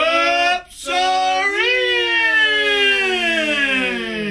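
A man singing out the phrase "Stops are in" loudly: a short first syllable, then one long held note that slides slowly down in pitch.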